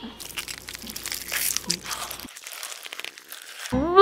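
A rapid run of crackling, crinkling clicks for about two seconds, then a lull; a melodic tune starts near the end.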